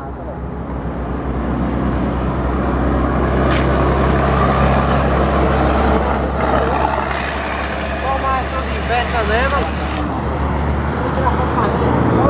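Diesel engine of a flatbed cargo truck driving past close by, a steady low drone that builds over the first few seconds, is loudest in the middle and then eases off. Voices call out over it in the second half.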